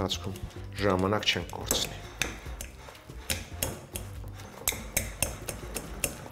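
Metal fork clinking and scraping against a glass bowl in many quick, irregular ticks as diced boiled potatoes are mashed.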